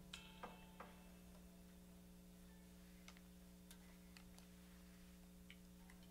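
Near silence: a steady low electrical hum from the band's amplifiers, with a few small clicks and taps in the first second and scattered faint ticks after.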